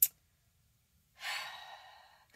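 A woman's audible sigh: a breathy exhale starting about a second in, strongest at first and then fading. A short sharp click comes right at the start.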